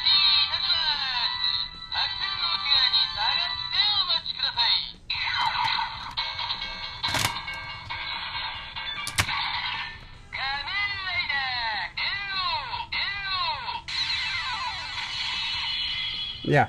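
Electronic sound effects, a recorded voice and music played through the small built-in speaker of a Bandai DX ToQger toy, set off by the Den-O Ressher toy train: the Den-Liner sounds. The sound is tinny and narrow, with a run of swooping effects about two-thirds of the way in.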